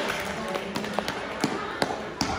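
Four or five scattered sharp taps, spaced irregularly through the second half, with the loudest near the end, over a steady background of hall noise.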